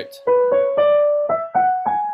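Piano playing a short line of single notes, one every quarter to half second, each struck and fading, stepping mostly upward in pitch.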